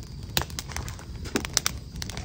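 Wood fire crackling: irregular sharp pops and snaps over a low, steady rumble, with a few louder snaps.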